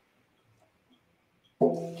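Near silence for the first second and a half, then a nylon-strung banjo string is plucked and rings out with a steady pitch.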